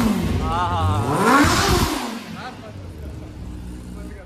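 Kawasaki ZX-10R's inline-four engine revved through an Akrapovič full exhaust system: the revs climb and fall away, with one more climb about a second and a half in, then it settles to a quieter idle.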